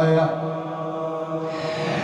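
A man's voice chanting a Shia mourning lament (rithā') for Imam Husayn into a microphone. He holds one long melismatic note that softens a moment in and stays soft until the next phrase.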